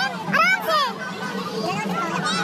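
Children's voices from the crowd around the game: high-pitched excited calls and chatter, loudest about half a second in.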